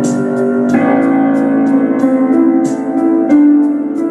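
Instrumental keyboard music holding sustained chords, which change about a second in and again near the end, with a faint tick repeating roughly every two-thirds of a second.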